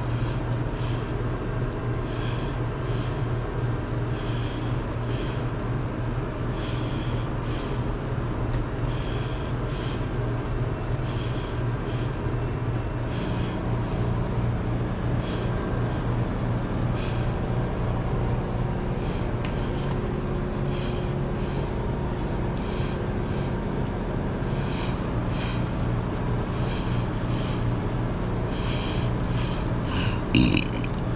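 Steady low hum of kitchen machinery, with a second, slightly higher hum joining about halfway through. Over it, faint short sounds recur every second or so as gloved hands pull apart and spread smoked shredded beef in a metal pan.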